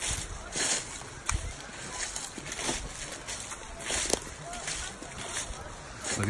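Footsteps crunching through dry fallen leaves on a wooded slope, an irregular step about every second.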